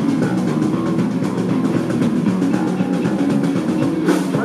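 Live rock band playing an instrumental passage: electric bass guitar, electric guitar and drum kit, loud and steady.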